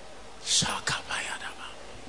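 A man's brief whispered, breathy utterance into a handheld microphone, lasting about a second and starting about half a second in.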